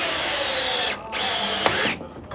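Power drill running in two bursts, its whine falling in pitch during each as it drives a fastener into the timber frame. It stops briefly about a second in and cuts off just before the end.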